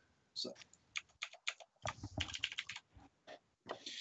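Typing on a computer keyboard: an irregular run of key clicks.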